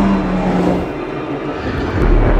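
Porsche 919 Hybrid Evo race car going by, its engine note dropping slightly in pitch as it passes and fading out about a second in.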